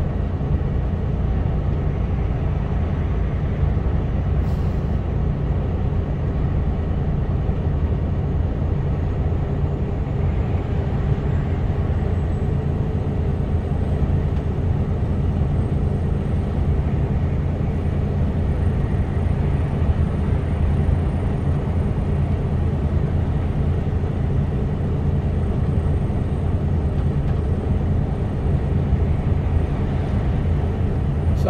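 Steady drone inside the cab of a Mercedes Actros lorry cruising on a motorway: diesel engine hum mixed with road and tyre noise, heaviest in the low range and unchanging throughout.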